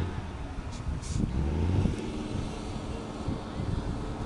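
Engine of a water truck running close by, a low, steady drone that swells loudest about a second and a half in.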